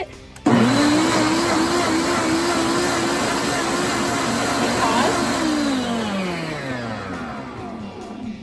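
Ninja Ultima countertop blender switching on suddenly and running at speed, churning dish soap and water into foam. About five seconds in its pitch falls steadily as the motor slows.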